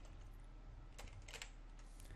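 Computer keyboard typing: a short run of faint keystrokes starting about a second in.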